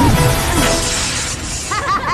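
Animated-film action soundtrack: music under a long, noisy crashing, shattering sound effect through the first second and a half. Quick arching, warbling pitched sounds follow near the end.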